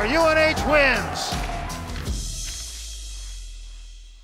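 An excited voice shouting in long, sliding calls over background music for about the first second. Then the voice drops away, and the remaining music and low hum fade out toward the end.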